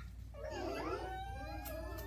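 Several young children's high voices at once, wordless and overlapping, with one drawn-out high note in the second half.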